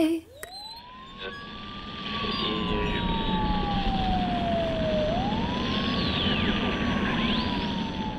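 The song's last note cuts off, and a siren wails in its place: a slow rise, a long fall, then a second rise and fall, over a steady hiss.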